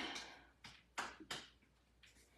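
A woman breathing hard while holding an exercise: a fading exhale at the start, then three short, sharp breaths, faint.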